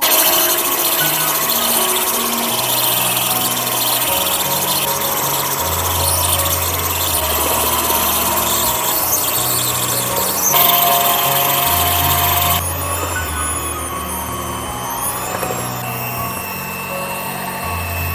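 Electric hand mixer on a bowl stand running with dough hooks, kneading a stiff donut dough until it turns smooth and elastic. It switches on abruptly and runs steadily; about two-thirds in its sound changes to a clearer whine.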